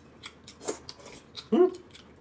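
Eating at a table: scattered small clicks of chopsticks, spoons and porcelain bowls, with mouth sounds of sipping rice porridge and chewing. A louder, short, rising slurp-like sound comes about one and a half seconds in.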